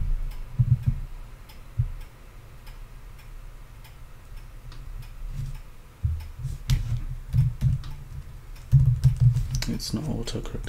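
Computer keyboard typing: scattered key clicks with dull thumps, coming quicker and louder in the last few seconds.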